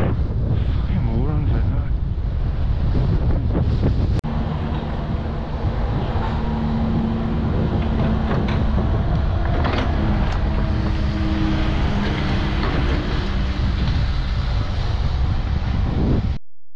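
Wind buffeting the microphone of a camera moving along a road, over a steady low road rumble. There is a sudden brief break with a click about four seconds in.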